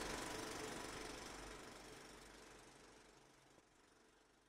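Steady mechanical clatter of an old film-projector sound effect, fading out evenly to near silence.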